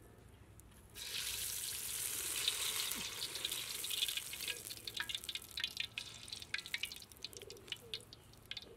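Sweet dough dropped into hot cooking oil in a wok, bursting into a sizzle about a second in. The sizzle thins out after a few seconds into scattered crackles and pops as the dough fries.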